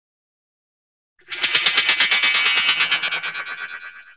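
An effects-processed intro sound, a rapid stutter pulsing about eight times a second, starting about a second in and fading away near the end.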